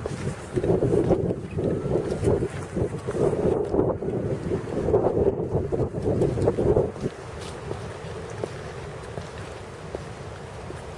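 Wind buffeting the camera microphone in uneven gusts, with footsteps on flat stepping stones set in grass. The gusts die down about seven seconds in, leaving quieter footsteps.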